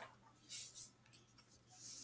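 Faint rustle of paper worksheet pages being turned and slid, in two soft swishes, about half a second in and near the end.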